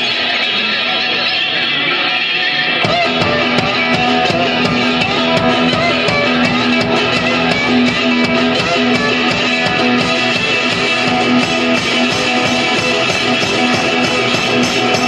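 Live blues on a resonator guitar, strummed and picked hard, with no singing. About three seconds in, a low bass drum and sharp percussion strikes join in and keep a fast steady beat under the guitar.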